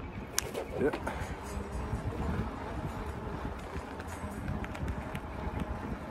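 Australian magpie swooping at a cyclist, with one sharp bill clack about half a second in and a few fainter clacks later, described as pretty clacky. A steady low rumble of wind on the microphone from riding runs underneath.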